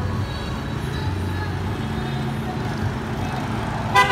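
Road traffic: motorbike engines running as they pass close by, with a car going past near the end, over a steady engine hum.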